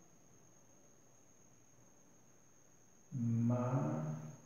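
Near silence with faint hiss, then about three seconds in a man's voice holding one drawn-out, steady syllable, like a hum or chant, that carries on past the end.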